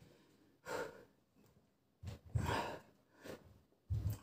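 A man breathing hard and exhaling with strain while bench-pressing a 40 kg barbell, four short forced breaths with the loudest about two seconds in. He is straining through the last reps of a hundred, his muscles fatigued.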